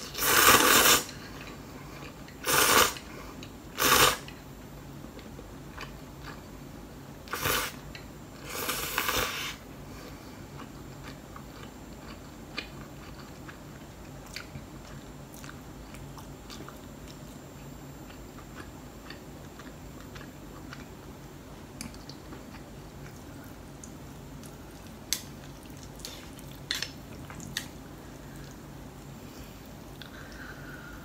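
Noodles slurped loudly from a bowl in about five bursts over the first ten seconds, then quieter chewing with occasional small clicks.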